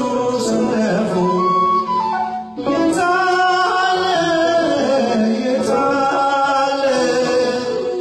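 Male voice singing an Amharic Ethiopian Orthodox hymn of repentance (mezmur) through a microphone, over instrumental accompaniment. There is a short break between sung phrases about two and a half seconds in.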